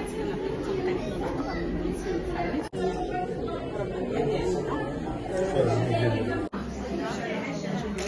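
Indistinct chatter of several people talking at once in a large room, broken twice by very brief dropouts.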